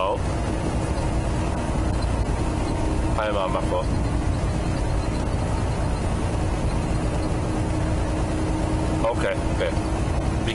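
Semi-truck cab interior while driving: a steady engine drone and road rumble with a constant hum. Brief snatches of a voice come through about three seconds in and again near the end.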